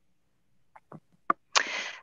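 Dead silence, then a few faint mouth clicks and a sharp, half-second intake of breath on a headset microphone just before a woman starts speaking.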